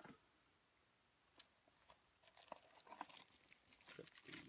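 Faint crinkling and rustling of plastic bubble wrap being handled and lifted out of a cardboard box. It starts about two seconds in, after a brief knock at the start and a single click.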